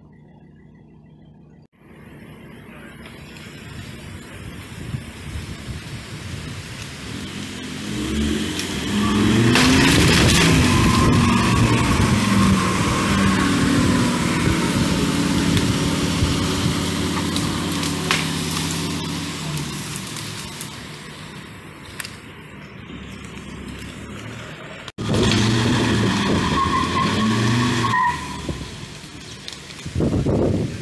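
A car driving past close by: engine and tyre noise on a wet road grow to their loudest about ten seconds in, with the engine pitch rising and falling, then fade away. After a cut near the end there is a shorter stretch of similar engine noise.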